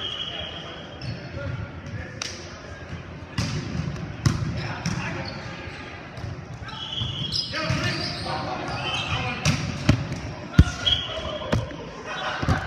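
Volleyball rally on a hardwood gym court: a string of sharp smacks as hands hit the ball and the ball strikes the floor, the loudest near the end, with players' voices calling between them.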